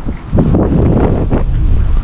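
Wind buffeting a handheld camera's microphone: a loud, low rumbling rush that swells in several gusts.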